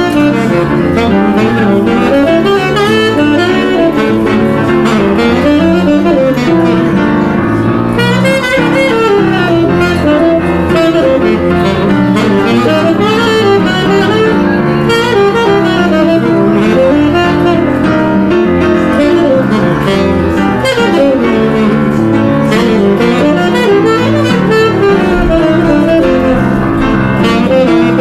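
Tenor saxophone playing a continuous jazz line over upright piano accompaniment.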